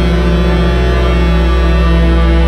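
Instrumental beat music with a deep, sustained bass held under steady chord tones.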